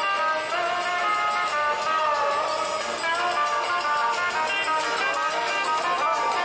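Music: a melody over a steady, quick beat.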